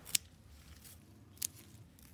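Hand pruning shears snipping through chilli pepper stems, two short sharp clicks: one near the start and one about two thirds of the way through.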